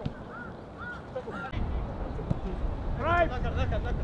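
Footballers shouting on the pitch: a few short faint calls early, then a louder shouted call about three seconds in, over a low rumble that sets in about halfway.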